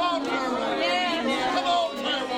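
A group of voices praying aloud at the same time, overlapping into a steady babble of speech with no single voice clear.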